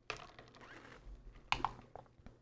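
Faint typing on a computer keyboard, a run of soft key clicks with two louder keystrokes about one and a half seconds in.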